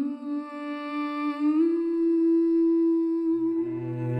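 A woman's voice humming long held notes without words, stepping up in pitch twice. Near the end a low bowed cello note comes in underneath.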